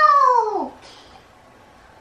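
A single high-pitched vocal call, about a second long, rising and then falling in pitch.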